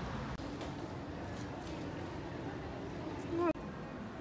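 City street ambience: a steady hum of traffic and passers-by, with a faint high chirp repeating about three times a second. About three and a half seconds in, a short voice is the loudest sound and is cut off abruptly.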